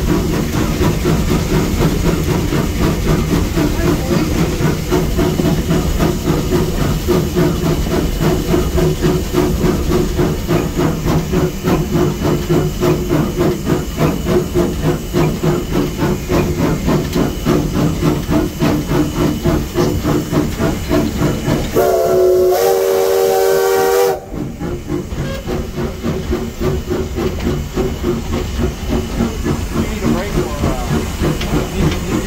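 Cab of a 1916 Baldwin steam locomotive running under way: a steady rhythmic exhaust beat with steam hissing. About two-thirds of the way in, one whistle blast of about two seconds sounds a chord.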